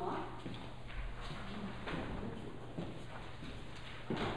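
Scattered light knocks and shuffling as people move about a meeting room during a handover between speakers, over a faint steady low hum.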